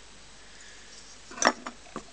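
Quiet room tone, with one short sharp click about one and a half seconds in and a fainter one just after.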